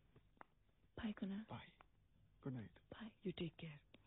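Quiet speech: two short spoken phrases, the first about a second in and the second about halfway through, with a low background between them.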